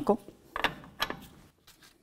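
Hand ratchet with a socket on the lower ball joint nut, clicking in a few short runs as the nut is worked loose from the steering knuckle stud.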